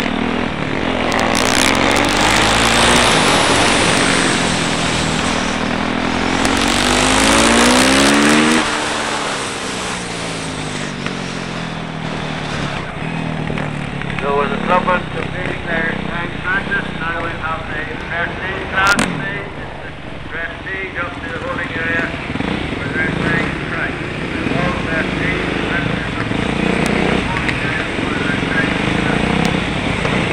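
Yamaha YZ450F's single-cylinder four-stroke engine, heard from a camera mounted on the bike. For the first nine seconds or so it revs up and down with a rush of wind, then it runs quieter at low speed as the bike slows. There is one sharp knock about two-thirds of the way through.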